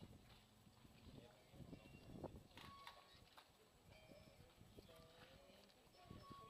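Near silence: faint outdoor ambience with a few faint, distant voices.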